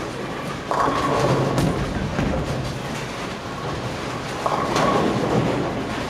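Bowling alley din: balls rumbling down the wooden lanes and pins crashing, with two sudden crashes of pins, one about a second in and another about four and a half seconds in.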